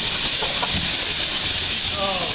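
Steady, loud hiss of steam escaping from a standing Metropolitan Railway E Class 0-4-4T steam tank locomotive, close at hand.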